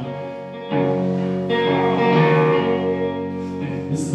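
Electric guitar playing sustained, ringing chords through an amplifier, with a new chord struck about a second in and another a moment later.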